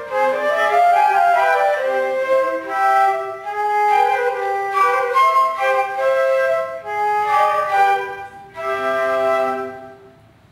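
A trio of concert flutes playing a classical piece together in close harmony, moving through a series of notes and closing on a held final chord that stops just before the end.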